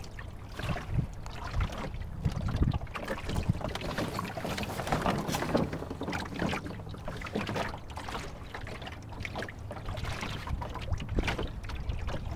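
Water rushing and splashing irregularly against the hull of a small wooden sailboat under way, with wind rumbling on the microphone.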